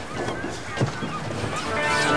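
Outdoor background noise with a single soft knock a little under a second in; about three-quarters of the way through, background music comes in as a sustained chord.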